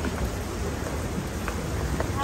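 Steady background noise: an even hiss with a low rumble underneath, holding at a constant level.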